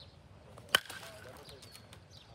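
A baseball bat hits a pitched ball once, a single sharp crack about three-quarters of a second in.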